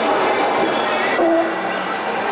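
A coin-operated kiddie carousel turning, its running noise blending with the steady hubbub of a busy mall food court, with a brief higher tone a little after halfway.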